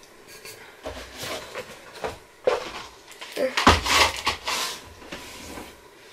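Handling clatter of an insulated metal water bottle: a few separate knocks and rattles, the loudest a little past the middle, called "so loud".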